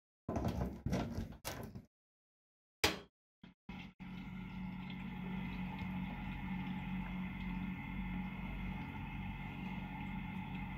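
Power cord being pushed into the IEC socket of a Benchy benchtop glycol chiller, with a few short knocks and clicks. About four seconds in, the unit starts running with a steady electric hum.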